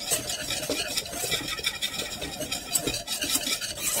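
Wire whisk beating thickening custard in an enamel saucepan: a fast, continuous run of scraping strokes as the whisk works against the pot to keep the custard from sticking.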